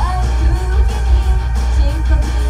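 Female vocals singing an idol-pop song over loud amplified music with a heavy, steady bass; a voice slides up in pitch right at the start.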